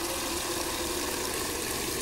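Liquid nitrogen being poured from a steel vacuum flask into a glass Dewar jar, boiling off with a steady hiss as the cold liquid hits the room-temperature glass.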